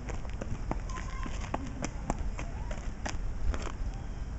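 Scattered light clicks and taps over a low rumble, with a brief faint child's voice a little over a second in.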